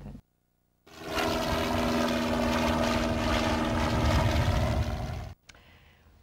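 Propeller aircraft engine running at a steady speed. It starts abruptly about a second in, after a moment of silence, and cuts off suddenly near the end.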